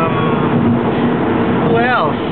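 Steady road and engine noise inside a moving car's cabin, with a low, even drone throughout.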